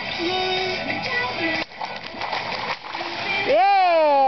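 A giant water-filled rubber balloon bursting under a person's weight, with a splash of water that stops sharply about a second and a half in. Near the end a child gives a loud, high yell that rises and then falls in pitch.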